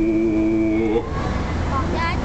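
A voice holds one steady note for about a second and then stops, over the low steady rumble of the moving steam riverboat.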